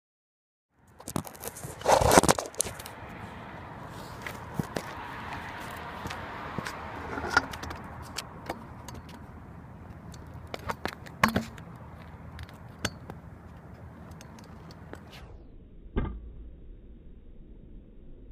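Stunt scooter wheels rolling on rough asphalt, a steady rolling noise with rattling and sharp clacks of the deck and wheels. There is a loud clatter about two seconds in, and the rolling noise drops away about fifteen seconds in, followed by a single knock.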